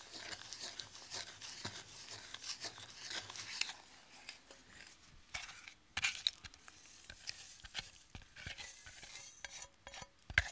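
Quiet scraping of a wooden spoon stirring melted butter, sugar and golden syrup in a saucepan, followed by a few light clicks and knocks of the pan as the mixture is poured into a glass bowl of flour and oats.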